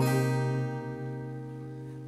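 Acoustic guitar's final strummed chord ringing out and slowly fading at the end of a song.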